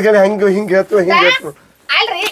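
Speech only: a voice talking in Kannada, drawn out with a wavering pitch, with a short break about a second and a half in.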